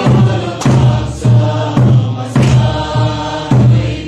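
A group of people singing together in unison over music with a steady beat and a repeating bass note.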